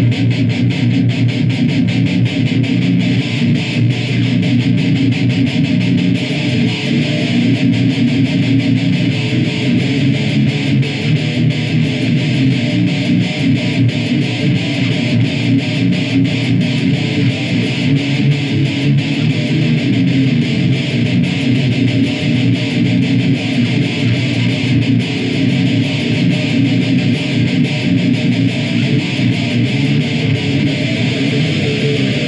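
ESP LTD EC-258 eight-string electric guitar played heavy and distorted through a Crate amp head and a Mesa Boogie speaker cabinet, in one continuous riff without pauses.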